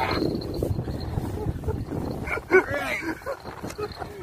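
Low rumbling noise, like wind on the microphone, with a few short, high, wavering vocal cries about two and a half seconds in.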